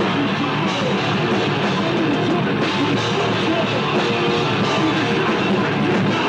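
Live rock band playing loud and without a break: distorted electric guitars over a pounding drum kit, post-hardcore style.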